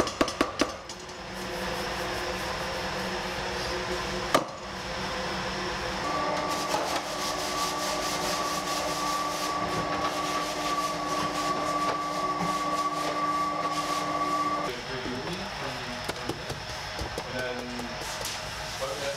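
A motor runs with a steady, even hum for about nine seconds, starting about six seconds in and cutting off suddenly, over a constant room hum. A few sharp clatters sound at the start and one loud knock about four seconds in.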